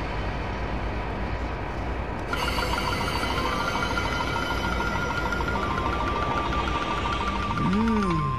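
Soundtrack of a tokusatsu transformation scene: a steady low rumbling effect, joined about two seconds in by a high, evenly pulsing tone, with a voice-like sound rising and falling in pitch at the very end.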